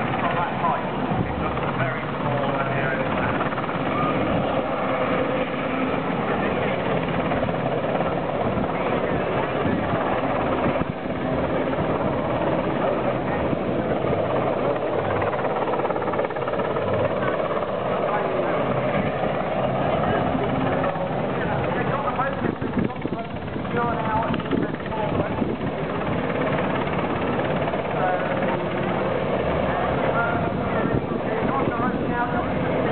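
Westland Sea King helicopter hovering low over the sea, its rotors and engines running steadily, with indistinct voices of people talking over the noise.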